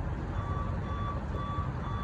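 An electronic beeper sounding four evenly spaced beeps, about two a second, starting about half a second in, like a vehicle's reversing alarm. A steady low rumble runs underneath.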